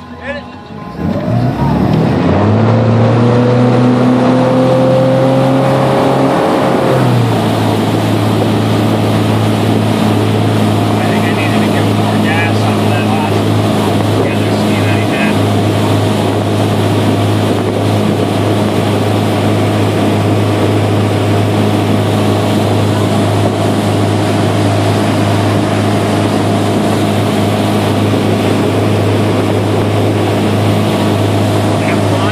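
Ski boat engine opening up hard about a second in to pull a water skier out of the water, its pitch climbing for several seconds. About seven seconds in it eases back to a steady drone at towing speed, with water and wind rushing past.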